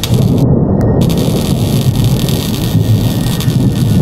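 Loud, steady rumbling static noise from a logo-animation sound effect, starting abruptly, with a hiss joining about a second in.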